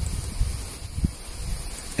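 A pause in speech filled by a low, uneven rumble with a faint hiss above it, and one soft low thump about a second in.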